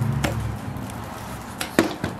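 Two brief handling knocks: a light click shortly after the start and a sharper, louder knock near the end, over a low hum that fades out in the first half second.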